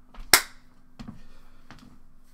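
A single sharp hand clap close to the microphone about a third of a second in, followed by a few faint ticks and knocks.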